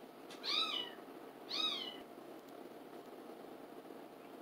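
A domestic cat meowing twice, about a second apart, each meow rising then falling in pitch, followed by quiet room tone.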